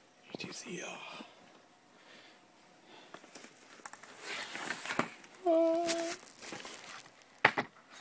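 Cardboard box and paper packaging being handled and rustled, with scattered light clicks and a longer crinkling stretch a little past halfway. A short hummed voice sound follows just after, lasting about half a second.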